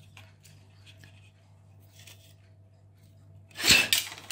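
Quiet light handling of small plastic parts over a faint steady hum, then near the end one short, loud, breathy burst from the man, like a sharp puff or sneeze-like exhalation.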